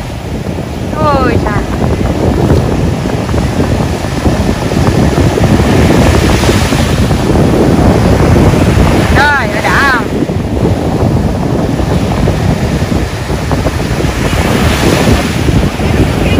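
Ocean surf breaking and washing in around the waders, with wind rumbling on the microphone. A child's short high cries cut in about a second in and again about nine seconds in.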